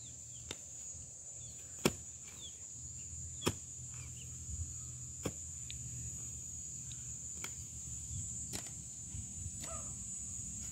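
Hoe blade chopping into grassy soil to dig a planting hole: irregular sharp strikes, about eight in all, the two loudest near two and three and a half seconds in.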